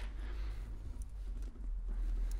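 Faint handling of a tape measure held against a stainless steel pipe bend, with a few light ticks, over a steady low hum.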